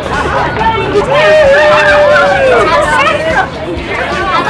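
A crowd of many people talking and calling out at once. About a second in, one voice holds a long call for about a second and a half, then lets it fall away.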